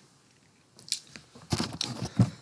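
Near silence, then short wet mouth clicks and a breath from a person close to the microphone: one click about a second in, and a cluster of them in the last half second.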